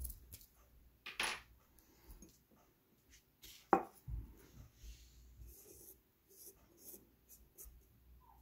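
A clear dish being moved about on a marble countertop by hand: a short scrape about a second in, then one sharp click just under four seconds in as it is set down, followed by faint handling rustles and taps.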